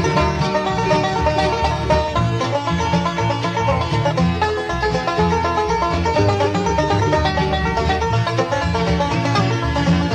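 Bluegrass string band playing an instrumental introduction, with banjo to the fore over guitar and upright bass.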